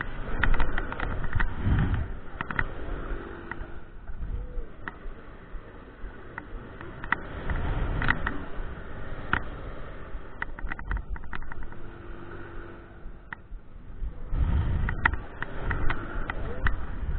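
Wind rushing over the microphone and the rattle of a swinging Mondial Furioso thrill-ride gondola. The rushing surges about every seven seconds as the gondola sweeps through each swing, with sharp clicks and knocks between the surges.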